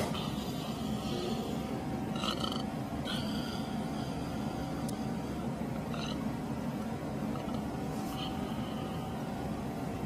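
Steady low rumbling background drone of an airport terminal, with a faint steady hum and a few brief faint high chirps.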